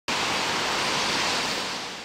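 A steady, toneless rushing hiss that starts abruptly and fades away over the last half second.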